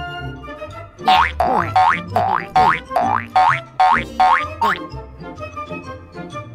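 Cartoon sound effect: a run of about eight quick rising boing-like tones, roughly two a second, from about a second in until near the end, over children's background music.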